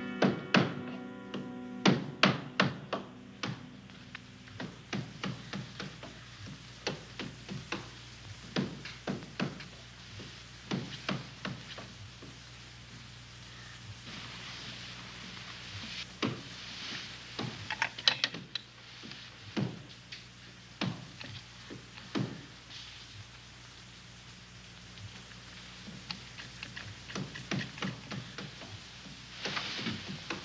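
Irregular bursts of knocking and tapping, a tool striking at a wall, with short pauses between the bursts. The loudest strikes come in the first few seconds and again in the middle.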